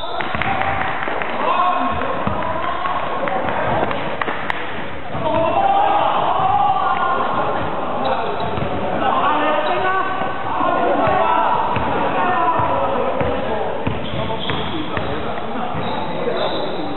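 Basketball bouncing on a hardwood gym floor during a game, with players' footfalls, mixed with people talking and calling out in a large, reverberant sports hall.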